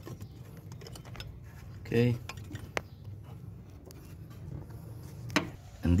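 A few sharp metallic clicks from a wrench working on the mounting bolts of a Mitsubishi 4D56 diesel's injection pump as they are loosened.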